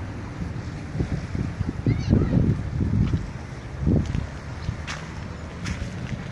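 Wind buffeting the microphone in uneven gusts, with a brief high chirp about two seconds in.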